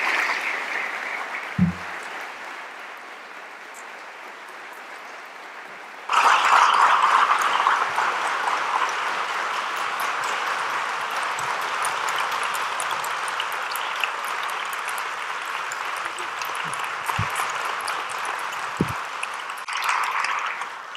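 Auditorium audience applauding. The clapping eases off over the first few seconds, then suddenly grows louder about six seconds in and carries on steadily, with a few brief low thumps.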